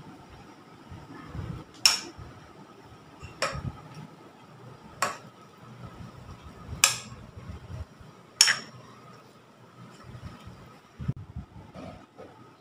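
Five sharp clinks on a cooking pot, about a second and a half apart, over soft rustling of the marinating meat being mixed inside it.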